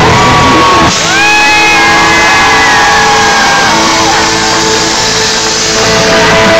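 Rock band playing loud and live: electric guitar and drums, with long held notes that slide up about a second in.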